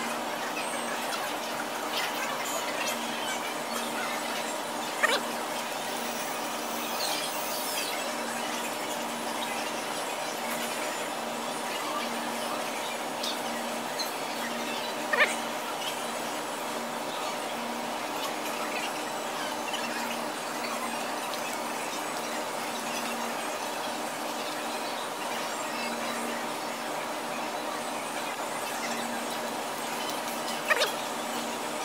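Steady big-box store room tone: a constant hum with a steady tone running through it. Two brief, sharp squeaks stand out, about five and fifteen seconds in.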